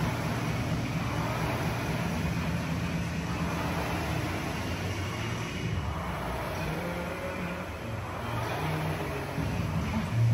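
Air rowing machine's fan flywheel whirring steadily as someone rows.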